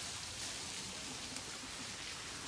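Steady outdoor background noise, an even hiss with no clear source, and one faint tick about halfway through.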